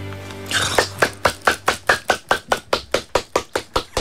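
The last held chord of a live song dies away, and about half a second in a few people start clapping. The clapping is steady and even, about five or six claps a second, and carries on to the end.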